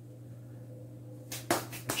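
Quiet room with a steady low hum, then a few light clicks and knocks in quick succession about a second and a half in, as things are handled at a small perspex terrarium.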